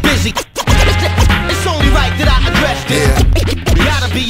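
Hip hop beat with a heavy bass line and turntable scratching of vocal samples, with a brief drop-out about half a second in.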